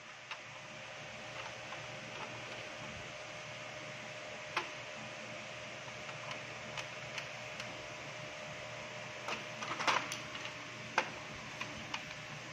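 A screwdriver working a screw into a plastic printer paper tray: a few short clicks and taps of metal and hard plastic, clustered near the end, over a steady low machine hum.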